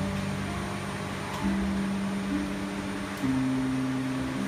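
Background music: sustained low notes, changing to new notes a little over a second in and again near the end, over a steady hiss.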